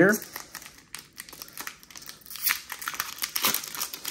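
Foil wrapper of a Pokémon trading card booster pack crinkling in irregular crackles as it is handled and pulled open.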